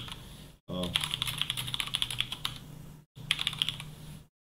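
Typing on a computer keyboard: a run of rapid keystrokes lasting about a second and a half, then, after a short pause, a second, briefer run of keys.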